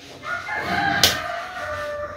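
A rooster crowing once: one long call that drops in pitch at the end. A sharp click sounds about a second in.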